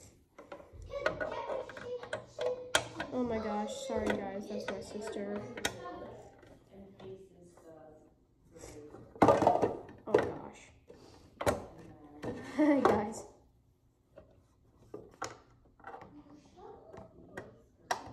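A child talking indistinctly, with light knocks and clicks of plastic fingerboard ramp parts and a rail being set down on a wooden table.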